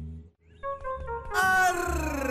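Dramatic background-score sting: held synth tones come in, then a loud sound-effect hit about one and a half seconds in, its tones sliding down in pitch after it.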